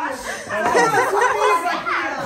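Several women's voices talking over one another in excited chatter, the talk getting busier and louder about half a second in.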